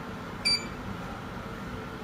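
A single short electronic beep from a Focus wireless alarm control panel's touch keypad as a key is pressed, about half a second in. The rest is low steady room hum.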